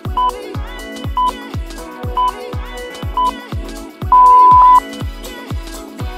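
Electronic dance music with a steady kick drum, over which an interval timer beeps once a second four times, then gives one long, loud beep about four seconds in. The long beep marks the end of the work interval and the start of the rest.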